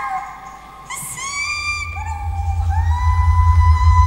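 A high, wordless singing voice sliding between notes. It falls away at the start, breaks in with a sharp rising cry about a second in, then rises to a long held high note. Beneath it runs a loud, fast-pulsing low drone.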